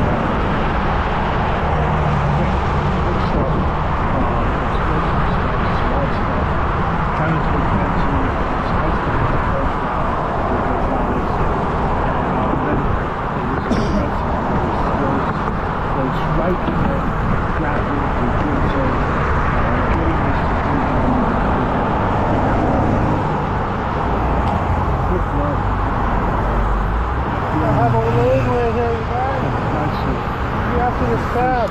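Steady road traffic noise from cars driving in the lanes alongside, mixed with wind rushing on the microphone of a moving bicycle.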